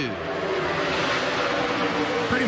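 A pack of NASCAR Xfinity stock cars at full racing speed: V8 engines running as one steady, loud drone.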